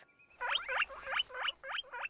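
Cartoon hamster squeaking: a quick run of short, rising squeaks, about four a second.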